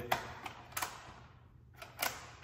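Three clicks as the XPS side extension (bariatric width wings) of a Stryker Power-PRO XT cot is worked to set the width. The first two are sharp and the last, near the end, is faint.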